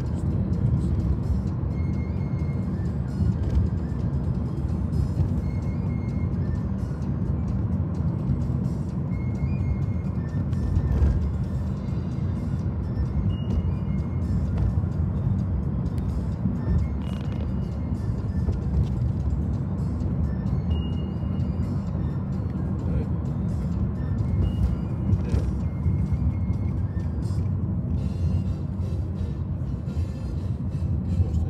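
Steady low road rumble inside a moving car's cabin, tyres and engine, with music playing along at a lower level.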